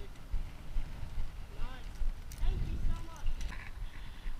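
Faint voices of people talking nearby in short snatches, over a low steady rumble, with a few light knocks.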